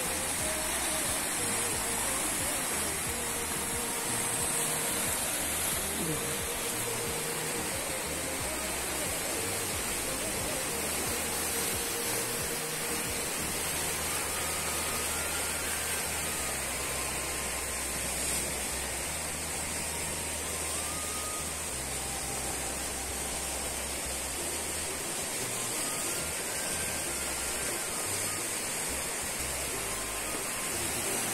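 Fast-flowing, flood-swollen muddy river rushing steadily, with a few faint brief tones over the water noise.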